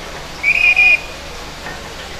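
A whistle blown sharply, one high steady note with a brief break in the middle, lasting about half a second, over a steady hubbub of crowd noise.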